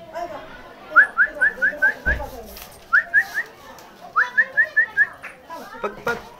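A person whistling short, rising chirps to call a pug, in three quick runs of three to six chirps each. A dull low thump comes about two seconds in.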